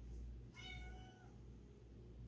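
A domestic cat meowing once: a single short, high meow about half a second in.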